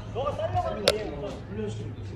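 Players' voices calling out across the pitch, with one sharp thud a little under a second in, typical of a football being kicked.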